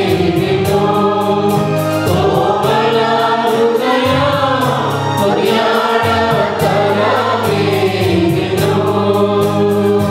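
Mixed choir of women and men singing a Telugu Christian worship song together into microphones, over electronic keyboard accompaniment with held bass notes and a steady beat.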